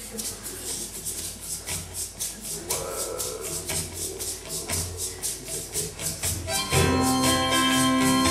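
Egg shaker playing a steady, quick rhythm, about four or five shakes a second, alone as the song's intro. Near the end, sustained chords from the band come in over it and are louder.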